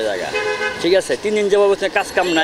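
A man speaking in Bangla, with a vehicle horn tooting briefly in the street behind him, less than a second in.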